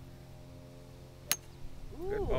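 A golf driver striking a ball: one sharp, clean crack about a second and a quarter in, a well-struck shot with good contact.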